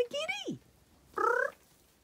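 Cat meowing: a drawn-out meow that rises and then drops away, followed about a second later by a shorter call with a steadier, wavering pitch.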